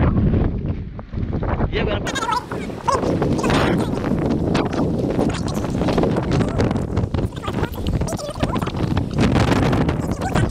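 Wind buffeting the microphone, with footsteps knocking on wooden steps and bridge planks; a brief laugh about two seconds in.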